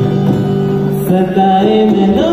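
Live Indian pop song with a male voice singing long held notes over acoustic guitar and dholak; the sung line shifts to new notes about a second in.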